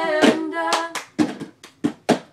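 Plastic cups slapped, lifted and knocked on cardboard tissue boxes, with hand claps, playing a cup-game rhythm under two voices singing a cappella in harmony. The singing stops about halfway through, leaving only the cup and clap rhythm.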